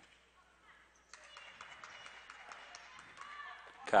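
Basketball game sounds on a hardwood court, faint: sneakers squeaking and short sharp knocks of play, starting about a second in.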